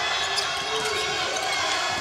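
Basketball game arena sound: steady crowd noise with a basketball being dribbled on the hardwood court.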